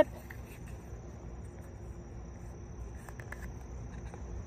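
A steady high-pitched insect trill in the background, with a few faint small clicks of a leather knife slip being handled.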